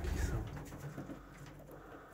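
Domestic Vienna pigeons in a loft cooing quietly, low repeated coos.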